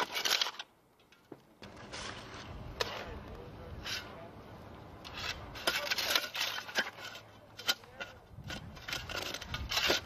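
Two shovels digging into soil: a run of irregular scrapes and crunches as the blades cut and lift dirt. A brief burst of noise comes at the very start, before the digging.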